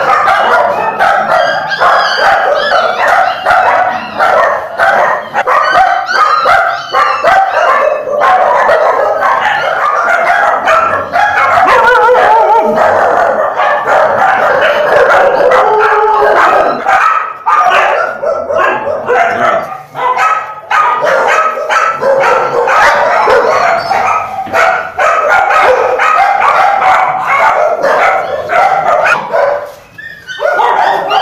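Many kennelled dogs barking at once, a loud, unbroken din of overlapping barks and yaps.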